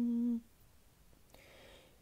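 A man's chanting voice holds one steady note, in a small room, that ends about half a second in, followed by a pause with only faint room noise.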